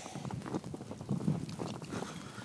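Footsteps crunching in snow at walking pace, a step about every half second, close to the microphone.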